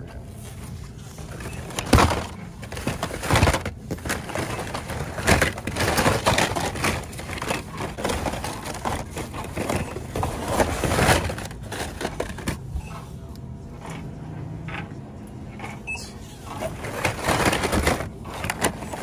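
Hot Wheels blister packs (cardboard cards with plastic bubbles) rustling, crackling and clattering against each other as a hand sorts through a bin of them. The clatter comes in irregular spurts over a steady low hum.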